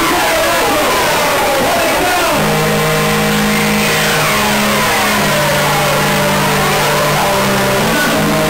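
Loud jungle dance track played over a club sound system. For the first couple of seconds it is a wash of rising and falling synth sweeps, then held low synth and bass notes that step to new pitches a few times.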